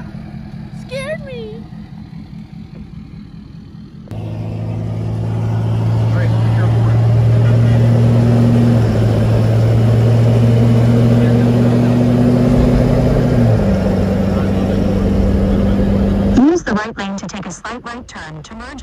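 Lifted Ford Super Duty's Power Stroke diesel running under way: a steady deep drone that comes in about four seconds in, builds, drops slightly in pitch a little before the end, then cuts off sharply.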